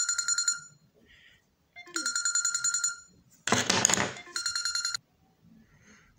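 A phone ringing: a trilling electronic ringtone in bursts about a second long, repeating roughly every two and a half seconds. A short rough noise comes between the second and third rings.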